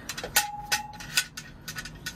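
Steel barn-door lock bar knocking against a metal bus door as it is held in place: a sharp metallic clank about a third of a second in that rings briefly, then a few lighter knocks.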